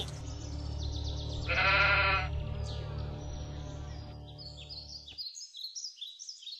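A single wavering bleat, "baaah", lasting under a second, comes about a second and a half in. It sits over a steady low hum that cuts off suddenly just after five seconds.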